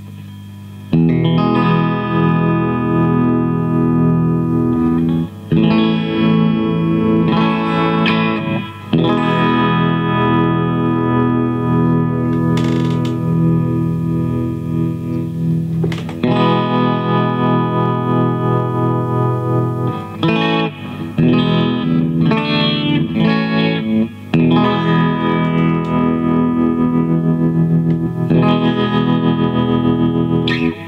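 Electric guitar, a Fender Telecaster, played through a Boss PN-2 Tremolo/Pan pedal in sawtooth mode with rate and depth at the middle, into a Fender Bassbreaker 007 amp, so that the sustained notes pulse in volume. Playing starts about a second in, after a moment of amp hum, with brief breaks between phrases.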